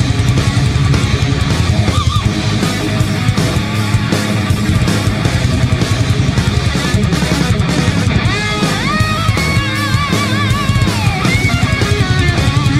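Heavy rock backing music with distorted guitars and a driving beat. A lead guitar line with bends and vibrato comes in about eight seconds in.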